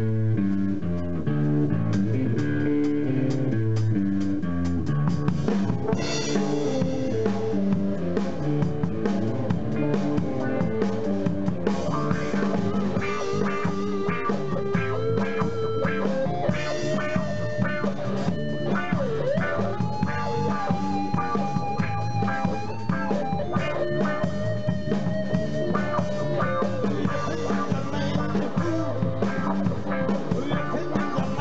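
Live rock band playing: guitar chords with drum kit, the drums filling out a few seconds in, and a held, wavering lead melody coming in about twelve seconds in.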